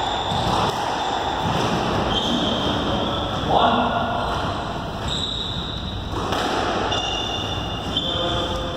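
Squash ball being struck and bouncing off the court walls and floor during play, with an echo in the hall.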